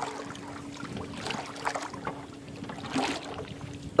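Steady low hum of a boat motor over faint wind and water noise.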